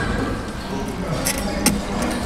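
Cutlery clinking sharply against plates twice, a little past the middle, the second clink the louder, over a low murmur of diners' voices.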